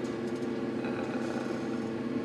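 Steady hum of a ventilation fan or air-handling system, the room's background noise, with a steady tone running through it. A few faint ticks come about a quarter of a second in.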